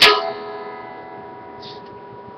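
A capoed electric guitar chord strummed once at the start and left ringing, its notes fading slowly.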